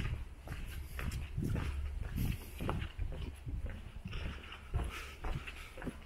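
Footsteps on a cobblestone street at walking pace, a sharp knock roughly every half second over a low steady rumble.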